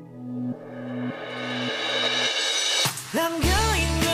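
Background pop music at a song's transition: low bass notes step along about every half second under a cymbal swell that builds up, then the full band and a singing voice come back in about three seconds in.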